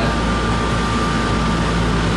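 Steady hum and air rush of kitchen ventilation fans, with a thin steady whine above it.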